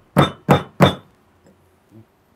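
Pestle pounding in a stone mortar: three sharp strikes about a third of a second apart, then it stops, leaving only a couple of faint knocks.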